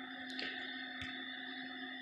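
Quiet room tone: a steady faint hum with a few thin steady tones, and two faint ticks, one under half a second in and one about a second in.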